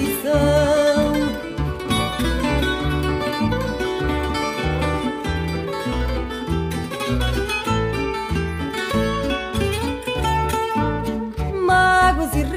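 Instrumental passage of a fado song: Portuguese guitar picking a melody of quick plucked notes over guitar accompaniment and a regular bass pulse.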